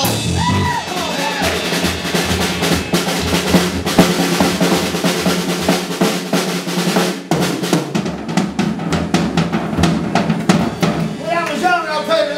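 Live blues band with the drum kit to the fore: dense, quick drum hits over a steady low bass line. Pitched guitar phrases come in at the start and again near the end.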